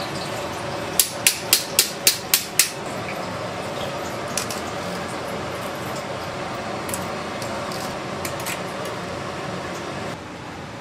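Metal serving tongs clicking seven times in quick succession, about four clicks a second, starting about a second in, then a few fainter clicks, over a steady background hum.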